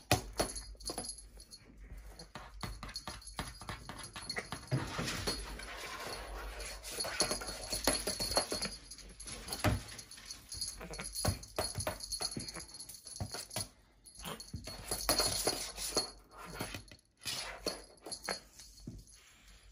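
Irregular light clicks and rattling as a beaded wand toy is jiggled and batted, with a high faint jingle.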